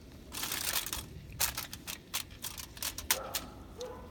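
Aluminium foil crinkling as it is handled around a pot of raw potatoes: a brief rustle about half a second in, then a run of sharp crackles over the next two seconds.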